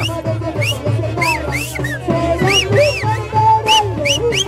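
Short swooping whistles, about half a dozen, each rising and falling in pitch, whistled on request over festive band music with a steady beat.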